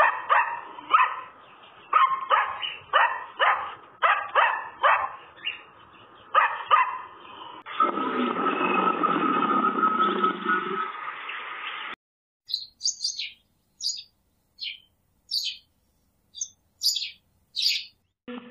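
A dog barking in repeated bursts for about eight seconds, then a few seconds of steady rasping noise. After that come about eight short, high, falling chirps spaced under a second apart.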